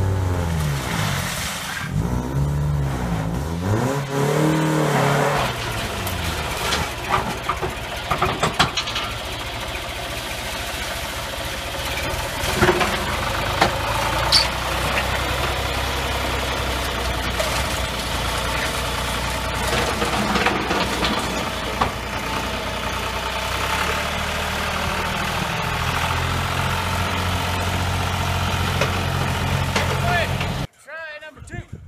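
Engines running: one revs up and down a few times in the first seconds, then a farm tractor's engine drones steadily. Occasional sharp metallic clanks sound over the drone.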